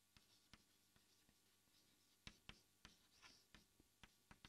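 Very faint chalk writing on a blackboard: scattered light taps and short scratches of the chalk as the words are written.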